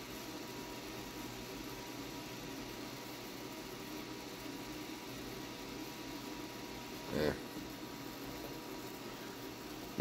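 Steady hiss and sizzle of a high-frequency solid-state Tesla coil's plasma flame, running at about 4.5 MHz and 250 W.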